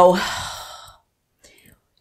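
A woman's breathy sigh trailing off the end of a spoken "so", fading out within about a second.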